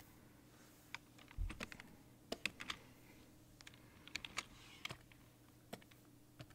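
Faint clicking of computer keyboard keys in short irregular clusters, with a single low bump about a second and a half in, over a faint steady hum.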